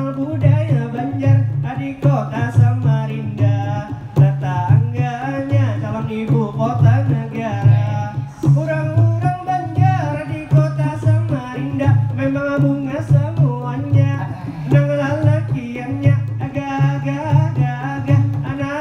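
Madihin performance: a man's voice chanting rhymed Banjar verse over a steady, repeating beat on terbang frame drums.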